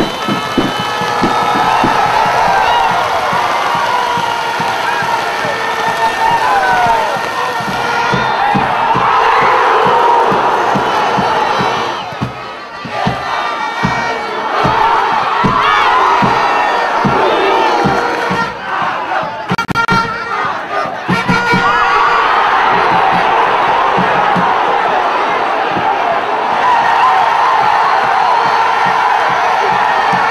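Football stadium crowd cheering and shouting, many voices at once, swelling and easing, with a short lull a little under halfway through.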